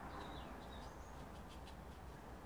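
Faint bird chirps, a few short gliding notes, over a steady low room hum, with a few light ticks.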